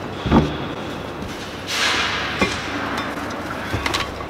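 A cupboard door is unlatched and bumps open with a thud. About two seconds in comes a short rushing scrape, then a few sharp knocks, as a breathing-apparatus set and its compressed-air cylinder are pulled out of the locker.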